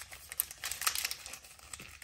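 Small plastic toy-accessory packet crinkling and tearing as it is pulled open by hand, in irregular crackles.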